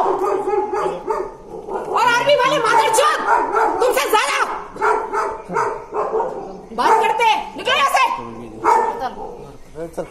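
Raised voices in a heated street argument, with a woman shouting.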